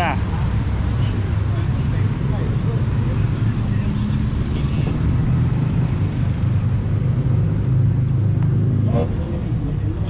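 Steady low rumble of road traffic close by, with faint voices in the background.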